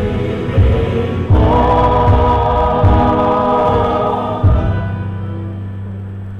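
Amateur mixed church choir singing together over live band accompaniment, with a low beat about every second. The voices stop a little past halfway, leaving a held low chord that fades.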